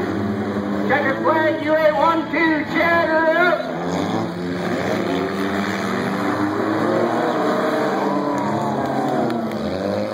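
Several figure-8 race cars' engines running and revving on a dirt track, their pitch rising and falling as the cars accelerate and back off. A voice is heard briefly about a second in.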